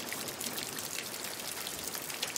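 A steady, rain-like water ambience: an even hiss dotted with many small drips and ticks.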